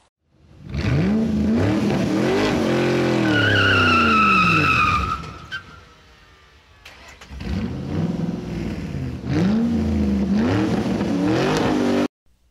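Car engine revving up and down, with a high tire squeal lasting about two seconds about three seconds in. A second spell of revving starts about seven seconds in and cuts off abruptly at the end.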